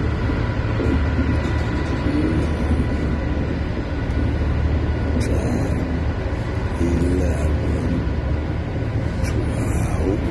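Freight train of waste-container wagons rolling past, a steady rumble of wheels on rail with a faint high ringing tone and a few brief rattles.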